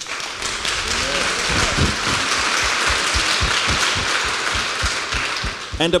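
Congregation applauding steadily for about six seconds, with a few voices calling out early on, dying away just before the reading resumes.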